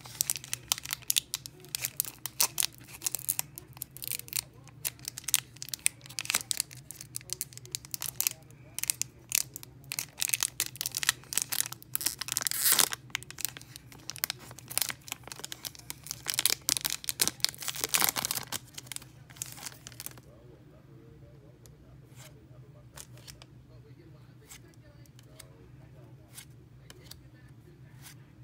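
The foil wrapper of a Pokémon Base Set booster pack crinkling and tearing as it is pulled open by hand, with the loudest rips about halfway through and again about two-thirds in. After that the crinkling stops, and only a few faint clicks of the cards being handled remain.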